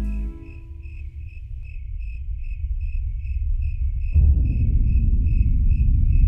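Crickets chirping in an even pulse, about three chirps a second, as night ambience. Beneath them runs a low drone that swells suddenly about four seconds in, and the tail of the previous music fades out at the very start.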